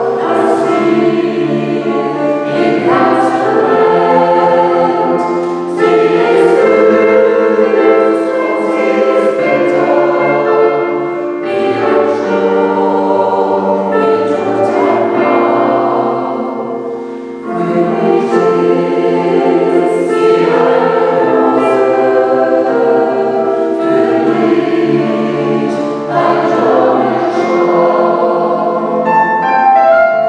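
Mixed choir of men's and women's voices singing a sacred piece in parts, accompanied on piano. The phrases break briefly about eleven and seventeen seconds in.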